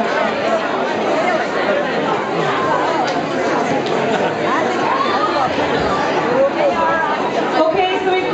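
Crowd chatter: many people talking at once in a busy room.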